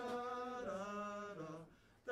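Tenor saxophone playing a slow melody line: long held notes stepping down in pitch, with a breath pause near the end.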